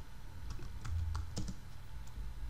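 Computer keyboard being typed on: about five uneven keystrokes as a short phrase is entered into a search box.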